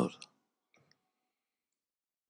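Near silence: a man's voice trails off at the start, then a single faint click just under a second in.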